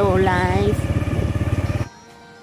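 A small engine running steadily with rapid, even firing pulses under a woman's voice. It cuts off suddenly near the end.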